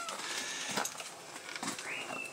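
A puppy's feet and claws on a concrete floor: a few soft, scattered clicks, with a short high squeak near the end.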